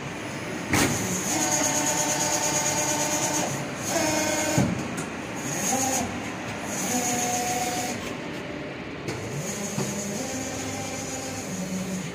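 Kawaguchi KM360 servo-driven hydraulic injection molding machine running: whining tones from the servo pump drive that shift and glide in pitch as it moves through its stages, with stretches of hissing and a knock about a second in.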